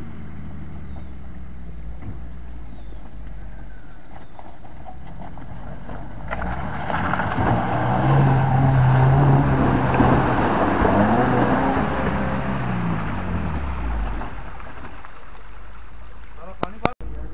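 Maruti Gypsy 4x4's petrol engine driving through a shallow puddle on rough stony ground. The engine swells as the vehicle comes close and splashes through the water, loudest about eight to ten seconds in, then rises and falls in pitch and fades near the end.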